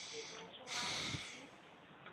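A person breathing noisily into a call microphone: a breath at the start and a louder, longer one about a second in.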